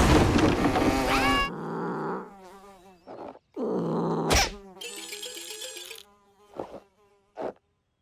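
Cartoon sound effect of a housefly buzzing in wavering bursts, after about a second and a half of loud, dense music and effects. A sharp hit comes about four seconds in.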